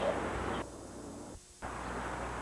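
Steady hiss and low hum of an old home-video soundtrack with outdoor background noise. It drops out almost completely for about a second, where the recording stops and restarts, then the hiss and hum come back.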